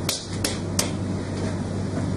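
A quick run of sharp clicks, about three a second, that stops just under a second in, over a steady low hum.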